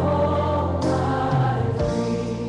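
Gospel choir music: voices singing over sustained instrumental chords, with a percussion hit near the middle.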